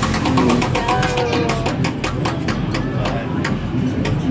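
A large upright prize wheel spinning, its pointer clicking against the pegs on its rim: quick clicks at first that come further and further apart as it slows, stopping about three and a half seconds in. Voices and music carry on behind it.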